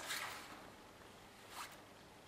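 Faint rustling of a fabric training vest as a hand reaches to the pocket for a dog treat: a short rustle at the start and a briefer one about one and a half seconds in.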